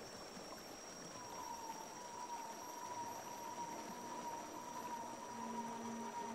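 Faint, still ambience with a single high, sustained note from the film score that slides in about a second in and holds steady, drifting slightly down in pitch.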